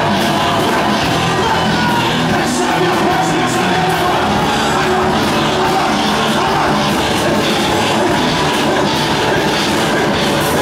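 Loud live church band music with electric guitar, with voices singing and shouting along over it.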